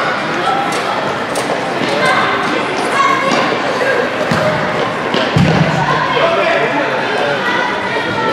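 Futsal ball being kicked and bouncing on a gym court in a large hall, with a heavier thud about five and a half seconds in, over the voices of players and spectators.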